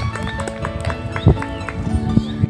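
Background music of steady held notes, with a string of sharp knocks, the loudest about a second and a half in.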